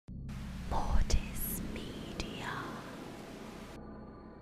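Channel logo sting: a whisper-like, hissing voice effect with two sharp glitch clicks over a low drone. The hiss cuts off suddenly near the end, leaving the drone.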